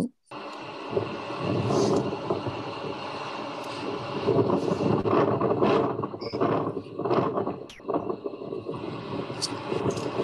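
Wind buffeting a microphone over a steady rumble of a ship at sea, from a video filmed on deck and played back through a screen share; it starts abruptly just after the beginning.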